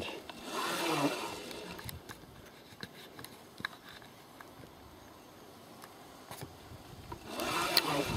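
Faint scraping and rubbing of a 36-volt electric bike hub motor being turned slowly by hand, with a few light clicks; the motor is spinning as a generator. It is a little louder in the first second and again near the end.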